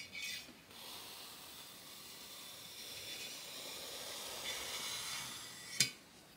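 A long kitchen knife slicing through a thick slab of high-density foam along a metal straightedge: a steady scratchy hiss lasting about five seconds, with a sharp click near the end.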